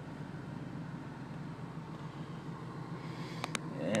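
2010 Chevrolet Camaro's engine idling steadily, heard from inside the cabin, with two light clicks a little after three seconds in.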